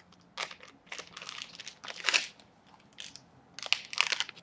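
Small clear plastic jewelry bag crinkling as it is handled and opened, in irregular rustles, with a few sharp crackles near the end.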